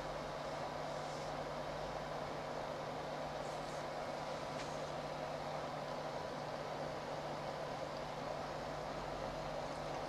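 Steady background hiss with a faint low, even hum: room tone picked up by the recording microphone.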